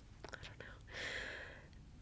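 A few faint mouth clicks, then a soft breath lasting about a second, from a woman pausing between sentences while reading close to the microphone.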